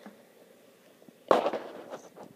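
Pages of an open picture book rustling and settling as a hand presses them flat and lets go: one sudden loud rustle a little over a second in that fades within about half a second.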